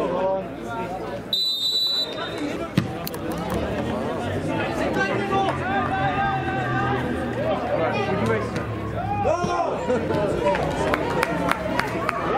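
Men's voices calling out and talking on an amateur football pitch, with a short, shrill referee's whistle blast about a second and a half in. A few sharp knocks near the end.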